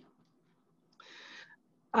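A pause in speech: mostly quiet, then a short, soft breath drawn in about a second in, with the voice starting again at the very end.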